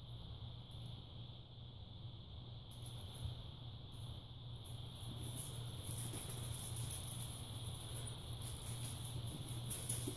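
Faint, irregular rustling and scratching of kittens playing on a rug, a little louder from about three seconds in, over a steady low hum.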